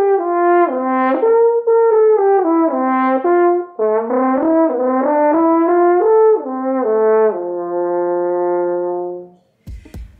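Solo French horn playing the closing phrase of a slow lyrical etude without a metronome: a connected line of notes with one short breath about a third of the way in, ending on a long held low note that fades away.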